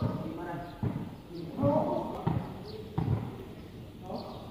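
A volleyball being kicked and headed in a game of foot volleyball: three sharp thuds, a second or so apart, over crowd voices.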